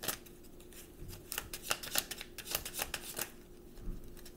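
A deck of oracle cards being shuffled by hand: an irregular run of crisp card snaps and flicks.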